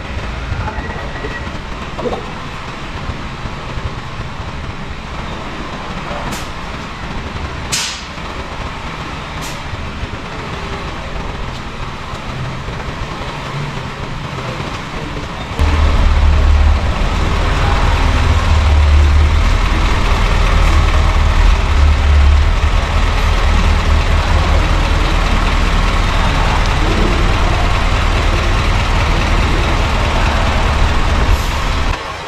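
Diesel engine of an Isuzu slide-on transport truck running as the truck creeps forward. The low engine rumble steps up sharply, louder and heavier, about halfway through. A few short sharp sounds come in the first ten seconds.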